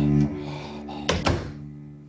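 Animated-film soundtrack: a held low musical chord breaks off just after the start, then two dull thumps come close together about a second in and fade away.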